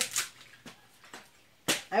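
Dry coconut husk being split and torn on the point of an upturned hoe: a few faint rustles and clicks of fibre, then one sharp crack near the end.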